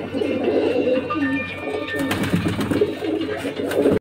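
Several domestic racing pigeons cooing in a loft: overlapping low, rolling coos repeating every half second or so.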